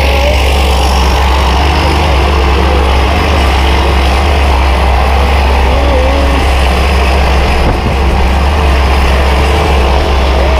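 Single-engine jump plane's engine and propeller running steadily at idle, a loud constant drone with a strong low hum.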